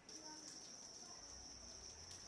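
Faint steady high-pitched insect chirring, crickets or similar, with faint distant voices underneath.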